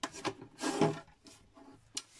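A hand sliding and shuffling small stamped paper tags across a craft mat: a few short scuffing rubs, the loudest about two thirds of a second in.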